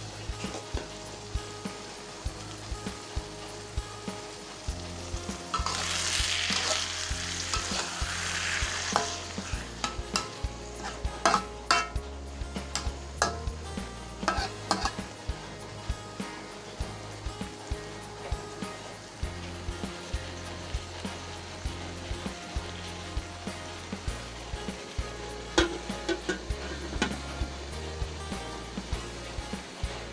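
Sambal with pineapple frying in an aluminium wok while a spatula stirs and scrapes it. The sizzling is loudest about six to nine seconds in, and frequent sharp clicks and scrapes of the spatula on the wok run through it.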